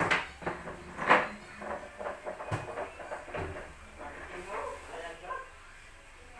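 Indistinct voices of people off to the side, loudest near the start, with a sharp knock about two and a half seconds in.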